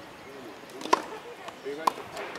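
Tennis racket striking a ball twice, sharp pops about a second apart, with faint voices under them.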